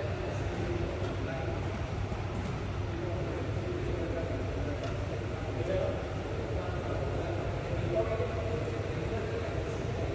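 Faint, indistinct voices talking over a steady low rumble.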